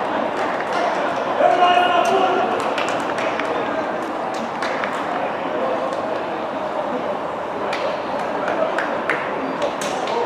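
Indistinct voices of players and spectators calling out around a football pitch over a steady background murmur, with a few sharp knocks scattered through.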